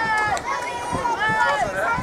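A single high-pitched voice calling out among the spectators, over a faint background of the crowd.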